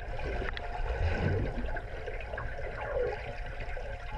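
Swimming-pool water heard through an underwater camera: a steady wash with a few faint swishes from swimmers kicking nearby.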